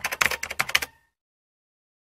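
Typing sound effect: a fast run of key clicks, roughly ten a second, that stops about a second in.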